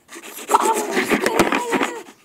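A small handheld camera falling and tumbling onto a tabletop, its microphone rubbing and scraping against surfaces. The scraping swells about half a second in, with a quick run of knocks, and stops near the end.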